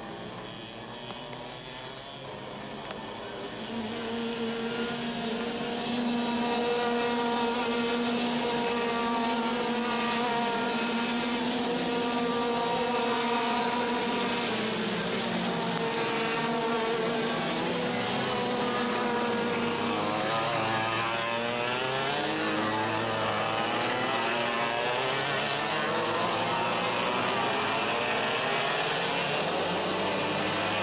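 IAME X30 125 cc two-stroke kart engines racing. The sound grows louder a few seconds in as one kart holds a steady high note, then in the second half several karts are heard at once, their engine pitch rising and falling as they brake and accelerate through the corners.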